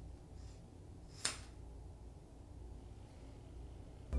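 Hair scissors snipping through a held lock of hair: a faint cut near the start, then one sharp metallic click of the blades a little over a second in, over quiet room tone.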